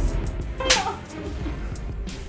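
A single sharp slap of a hand across a face, a little under a second in, over dramatic background music.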